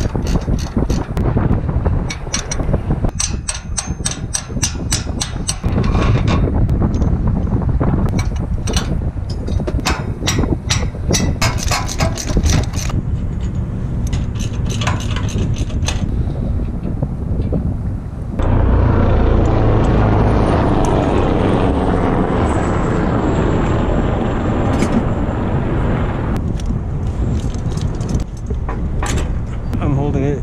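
Runs of sharp metallic clicks from hand tools working the steel mounting bracket on a tower. About eighteen seconds in, a loud rush of wind buffets the microphone for several seconds, then eases.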